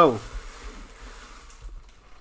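Faint rustle of trading cards being slid across and set down on a tabletop by hand, fading out after about a second and a half.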